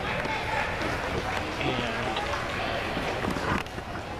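Indistinct chatter of several spectators close to the microphone, over faint music; the sound drops suddenly near the end.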